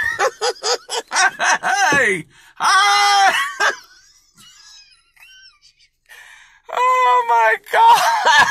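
A man laughing helplessly: a fast run of short laughing bursts, then long, high drawn-out wailing laugh cries about three seconds in and again near the end, with a quieter gasping pause between.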